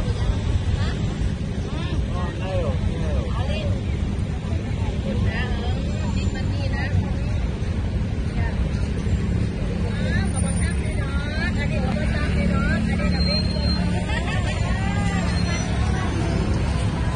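Busy street ambience: a steady rumble of vehicle engines and traffic, with voices of people talking nearby coming and going.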